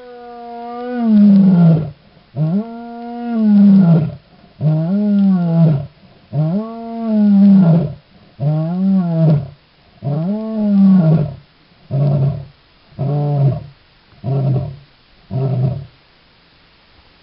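Lioness roaring: a bout of long, deep moaning calls, each lasting up to two seconds and falling in pitch at its end. In the last few seconds they shorten into a run of quick grunts about a second apart.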